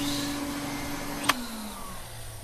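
Vacuum cleaner running with a steady hum. About a second and a quarter in there is a click, after which the hum falls in pitch and fades as the motor runs down.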